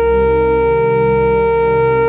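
Trumpet holding one long, steady note, with a low accompaniment sounding beneath it.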